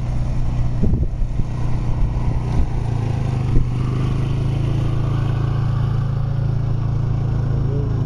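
A motor vehicle's engine running steadily, a low hum that becomes more even about three seconds in.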